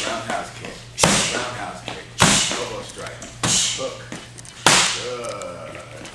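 Gloved punches and kicks smacking into padded strike pads, four sharp hits about a second apart, each with a short echo in the room.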